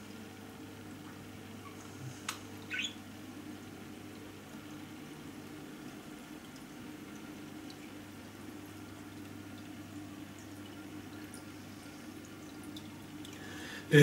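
Faint steady hum with light water trickling, typical of aquarium filters running. There is a click about two seconds in and a short rising squeak just after it.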